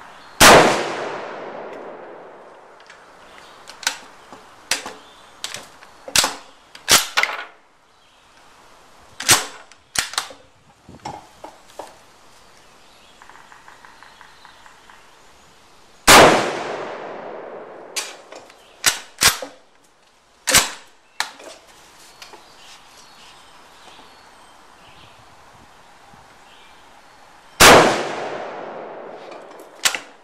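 Spanish Mauser 1893 bolt-action rifle in 7×57mm fired three times, each shot followed by a long fading echo: about half a second in, about 16 seconds in, and near the end. Between the first shots come runs of sharp metallic clicks and clacks as the bolt is worked.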